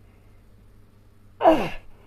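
A man's loud, short exhaled sigh with a steeply falling pitch, about one and a half seconds in, from the effort of swinging his legs overhead and back down in a floor exercise.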